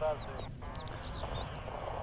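Birds calling: several short, wavering chirps that slide up and down in pitch through the first second and a half, over low background noise.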